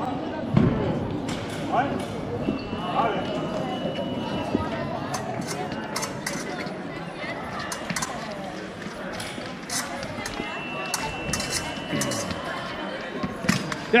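A youth épée bout on a piste in a sports hall: fencers' quick footsteps and short sharp clicks and knocks throughout, over the murmur of voices in the hall. Two long steady electronic beeps sound a few seconds apart, each lasting about two seconds.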